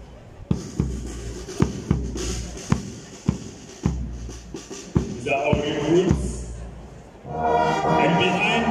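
Brass band drums keeping a steady march beat, about two strokes a second. A brass chord sounds briefly about five seconds in, and the full brass band comes in near the end.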